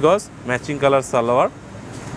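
A man speaking Bengali in short phrases, with a brief pause near the end.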